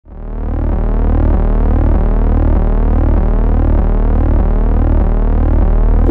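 Synthesized intro drone: a deep, steady hum under a layer of evenly repeating pitch sweeps. It fades in over the first second.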